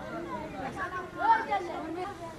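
Several people's voices talking over one another, with one louder voice rising and falling about a second in.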